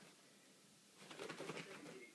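A short, coo-like trilling call about a second in, after a near-quiet start.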